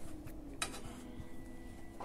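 Faint scraping and light ticks of a kitchen knife pushing minced garlic across a wooden cutting board into a roasting tray, with one sharper click a little over half a second in.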